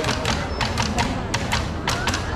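Marching band drum section playing a run of sharp, crisp strikes, about three or four a second, with no brass playing.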